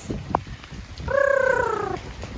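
An animal call: one drawn-out cry, about a second long, starting about a second in and falling gently in pitch.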